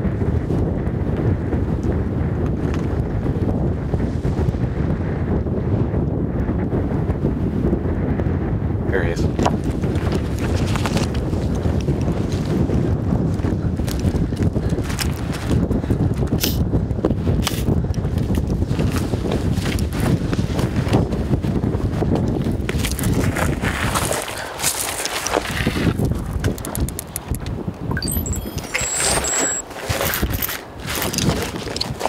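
Strong wind buffeting the microphone as a dense low rumble, with scattered knocks of footsteps and gear on rocky ground from about a third of the way in. The rumble falls away about four-fifths of the way through, leaving the knocks and lighter rustle.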